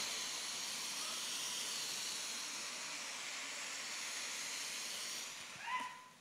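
A steady high hiss with no speech over it. It fades slightly toward the end and cuts off just before the speech resumes.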